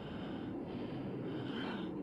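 Steady hiss of Harrier cockpit noise heard through the pilot's oxygen-mask intercom microphone, with his breath in the mask, while he pulls about six G in a tight turn.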